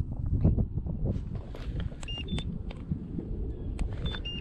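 Low rumble of wind and handling with scattered small knocks. About halfway through come two short electronic beeps, the second higher, from the digital fish scale.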